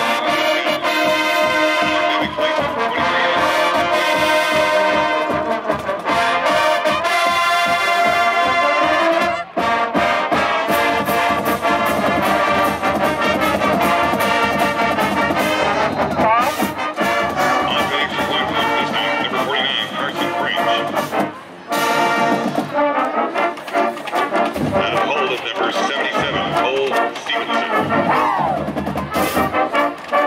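High school marching band playing its fight song: sousaphones and other brass with flutes over a steady beat of bass drums and cymbals. The music dips briefly twice.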